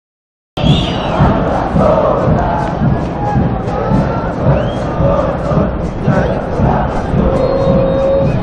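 A large crowd of football supporters in the stands singing a chant together, loud and continuous. It starts suddenly about half a second in.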